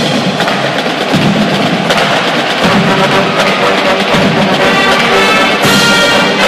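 A marching band playing loudly: drums and percussion hitting under brass, with held brass chords coming through more clearly from about halfway in.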